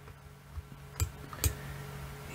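Two computer mouse clicks about half a second apart, a second into a quiet stretch, over a faint steady hum.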